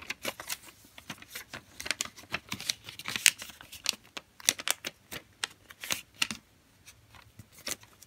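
A sheet of origami paper being folded edge to edge and creased by hand: rapid, irregular crackles and snaps of the paper, busiest for the first six seconds and sparser near the end.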